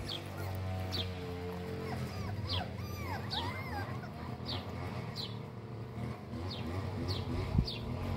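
Puppies whimpering softly a few times, with small rising-and-falling squeaks about two and a half to three and a half seconds in. Short high chirps from a bird repeat about once a second throughout.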